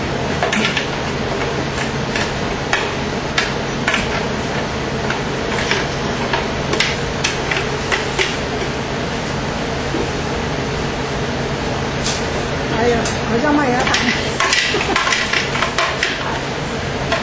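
Scattered clinks and knocks of a glass blender jar and glassware being handled over a steady hum. Near the end, a thick frozen-fruit smoothie scrapes and slides out of the blender jar into a stemmed glass.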